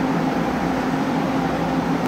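Taiwan Railway DRC1000 diesel railcar's engine running steadily, a constant low hum with no change in pitch or level.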